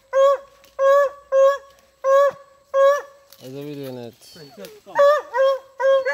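Hunting dogs yelping: a run of high, even, pitched yelps about two a second, with a pause in the middle for a lower, longer call that falls in pitch.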